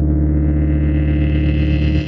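Synthesized intro sting: a deep, sustained drone with steady low tones, its upper range growing brighter as it builds, beginning to fade right at the end.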